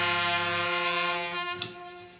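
A rock band holding a brass-sounding chord that fades away over the second half, its bass note dropping out first. A single sharp percussive hit comes about a second and a half in.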